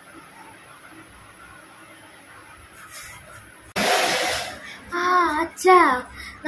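A faint steady hiss. About four seconds in comes a sudden loud burst of noise lasting under a second, then a child's voice speaking in a rising and falling tone near the end.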